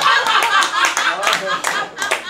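Audience clapping in quick, irregular claps, with voices over it, in reaction to a punchline.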